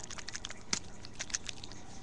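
Small, irregular clicks and crackles from a sticker sheet being handled close to a webcam microphone.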